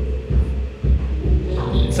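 Electronic music generated live from moving particle geometry and played through Ableton Live. A deep bass pulse comes about twice a second under steady held tones.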